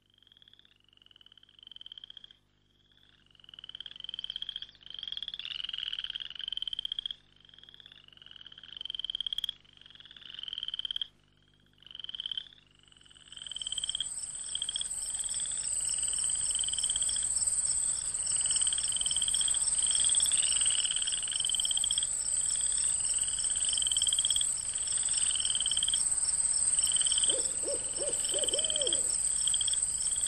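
Frogs croaking in a steady run of short repeated calls. About halfway through, a louder, steady high-pitched insect drone joins them, making a night-time ambience.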